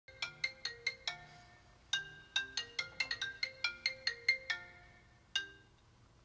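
Mobile phone ringtone for an incoming call: a melody of quick, chiming notes in two runs with a short gap between, then a single note about five seconds in.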